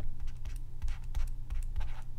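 Pen stylus writing on a drawing tablet: quick irregular taps and light scratches as the strokes are drawn, over a steady low hum.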